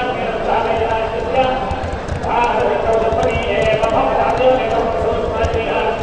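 A man's voice chanting in a drawn-out, sing-song way, holding each pitch for about half a second to a second, with light clattering underneath.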